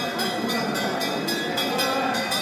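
Many voices chanting together in one continuous dense mass, with a light regular beat about three times a second above it.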